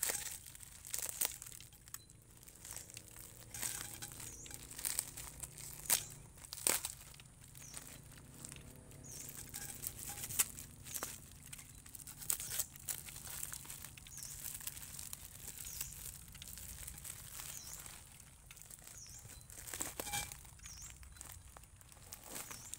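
Plastic bag and paper wrapping crinkling and tearing as they are pulled away from a tree's root ball, in irregular rustles broken by sharp crackles.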